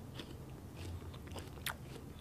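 A person chewing a bite of rose apple, faint crunching with a few short sharp crackles as the firm, crisp flesh breaks between the teeth.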